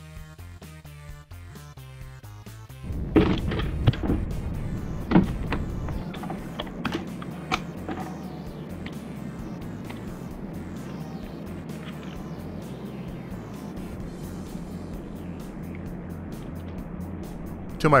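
Background funk music, joined about three seconds in by a CNC router spindle cutting a polycarbonate sheet, with a few sharp cutting noises at first and then a steady machining noise.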